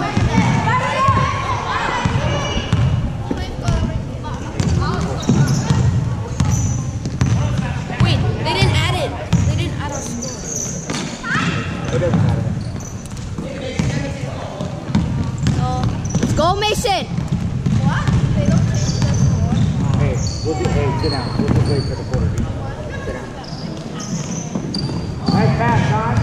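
Game sounds of a youth basketball game in a gym: a basketball bouncing on the hardwood floor, short high sneaker squeaks, and indistinct shouting from players and spectators, all echoing in the hall.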